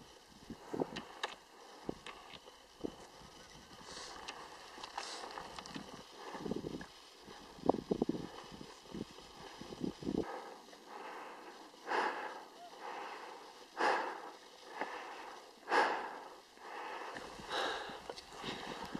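Footsteps on rocks and loose stones, with irregular knocks and scrapes. Then a hiker's heavy breathing while climbing a steep slope, one loud breath about every two seconds.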